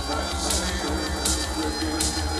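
Live electronic darkwave music: a drum-machine snare hitting about every three-quarters of a second over a steady deep synth bass, with a man singing into a microphone.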